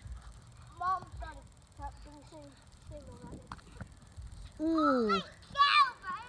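Children shouting and calling out during play, without clear words: short calls early on, a long falling yell about three-quarters of the way in, and a loud high-pitched shout near the end.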